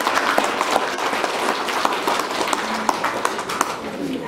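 Applause from a crowd of people: many hands clapping at once, with scattered sharper single claps standing out.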